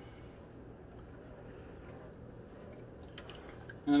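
Quiet kitchen room tone: a steady low hum with faint liquid sounds from the pot of honey water. A man's voice starts right at the end.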